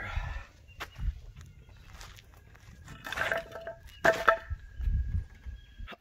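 Scattered knocks, scuffs and low thuds of hand work on a truck cab lift as the cab is shifted by hand, with two short grunts of effort about three and four seconds in.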